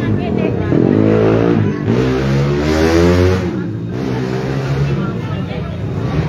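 A motor vehicle engine revving up twice in quick succession, its pitch climbing each time and then dropping back about halfway through, with voices of a crowd around it.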